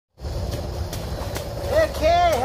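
Low, uneven rumble of wind buffeting the microphone, with a few faint clicks, and a man's voice starting briefly near the end.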